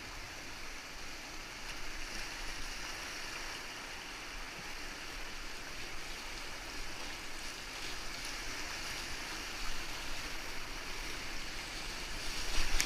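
Whitewater rapids rushing and churning close around a kayak: a steady hiss of fast, broken water.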